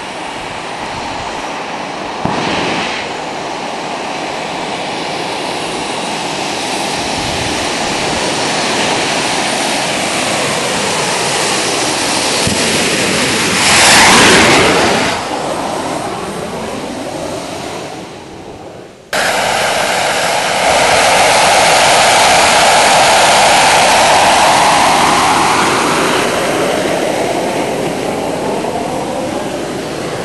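Gas turbine jet engine of a kart running loud as it drives down the road, building to a close pass about 14 seconds in with the pitch dropping as it goes by. An abrupt cut about 19 seconds in leads to another loud run of the turbine.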